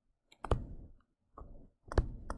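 Digital pen tapping and scraping on a tablet screen while handwriting: a few separate sharp clicks, the loudest about half a second in and just before the end.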